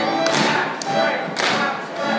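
Live folk dance-band music with a fiddle tune, overlaid by loud, sharp hand claps from the dancers, two main claps about a second apart.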